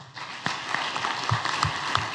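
Audience applauding: many people clapping, the applause swelling up within the first half second and then holding steady.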